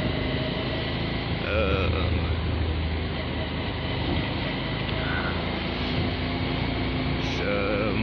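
Motorcycle riding at a steady cruise, heard from the rider's seat: a constant engine hum under wind and road noise, with a few brief spoken words.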